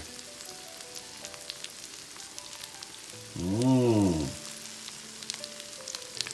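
Scallops grilling under scallion oil, with a steady fine sizzle and crackle of the hot oil. A drawn-out murmured 'ừ' breaks in about halfway.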